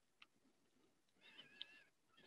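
Near silence: room tone, with a tiny click just after the start and a faint, short wavering tone a little past halfway.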